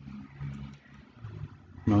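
A man's low, drawn-out hesitation hum while he thinks, in two stretches, with a couple of faint clicks.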